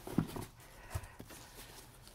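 A few light knocks and bumps from a cardboard shipping box being handled on a tabletop, over a faint steady hiss.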